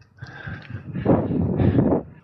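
Wind buffeting the microphone of a bike-mounted camera while riding a gravel bike along a paved path, a rushing noise that builds up after a brief lull and stays strong.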